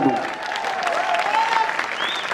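Large audience applauding, many hands clapping densely, with a voice calling out over the clapping.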